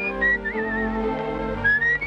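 Cartoon soundtrack: a high whistle that wavers about half a second in and slides upward near the end, over held orchestral chords.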